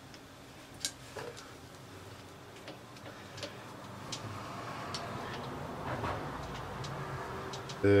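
Lathe chuck turned slowly by hand, giving scattered light clicks and ticks, with a soft rubbing sound that builds from about halfway in.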